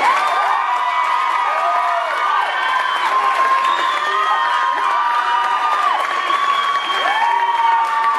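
Audience cheering and applauding, with many long, high-pitched screams and whoops rising and falling over one another.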